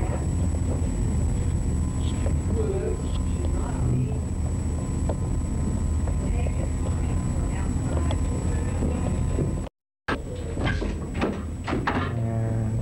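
Heavy low hum with a steady high whine from a poor-quality 1981 reel-to-reel videotape soundtrack, with faint, muffled voices under it. The sound cuts out completely for a split second near the end, and a voice then comes through more clearly.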